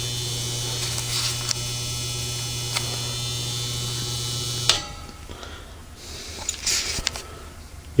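1940s A.C. Gilbert Polar Cub electric desk fan running with a steady electrical buzz, which cuts off abruptly with a click a little under five seconds in, followed by faint handling sounds. The owner later traced the buzz to frayed wiring and worn solder connections.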